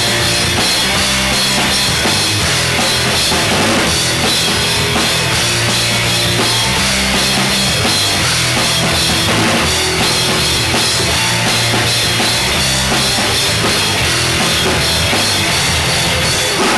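Live rock band playing loud and steady on electric guitars and a drum kit, an instrumental passage with no singing.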